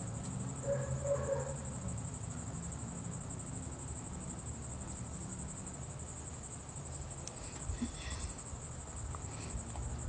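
Faint steady high-pitched chirring of night insects, over a low background hum, with faint murmuring about a second in.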